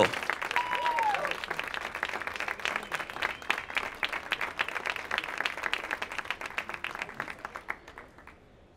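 Audience applauding, a dense patter of many hands clapping that gradually thins and dies away near the end.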